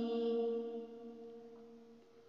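A woman's singing voice holds the last note of a line of an Urdu nazm, then fades away over the first second and a half into a near-silent pause.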